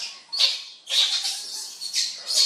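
Baby macaque giving short, high-pitched cries, three in a row, the middle one longest.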